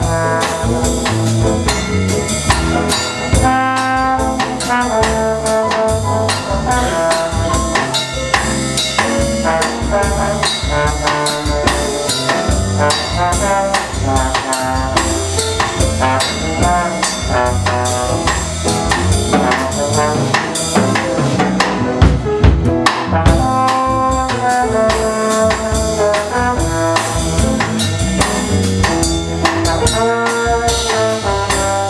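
Small jazz combo playing live: a trombone sounding held melody notes over piano, electric bass and drum kit. A few louder drum hits come about two-thirds of the way through.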